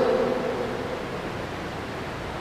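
A pause in a man's speech in a reverberant church: the last word's echo fades within the first half-second, leaving a steady, even hiss.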